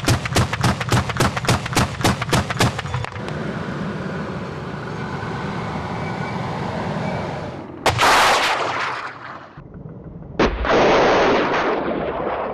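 Military vehicle weapons firing on a range: a rapid burst of automatic fire, about five or six shots a second for three seconds, then a steady rumble. About eight seconds in and again about ten and a half seconds in comes a sharp bang followed by a loud rushing blast lasting over a second.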